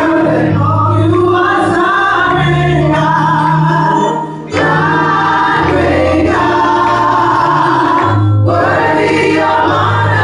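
Gospel praise team of women's voices and a man's voice singing together in harmony through handheld microphones, with a brief lull a little after four seconds in.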